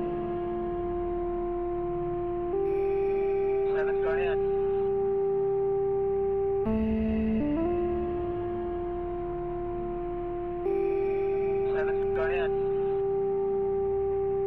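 Slow ambient synthesizer music from a Native Instruments Absynth soft synth: held pad chords that alternate between two harmonies, changing about every four seconds, with a warbling higher tone drifting in twice.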